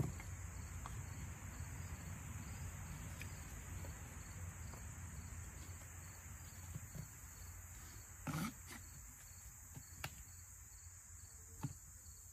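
Insects droning steadily at a high pitch, with a faint rustle early on and one brief soft thump about two-thirds of the way through.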